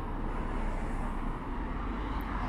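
Road traffic on a busy main road: cars and a van passing close by, a steady rush of tyres and engines with a low rumble.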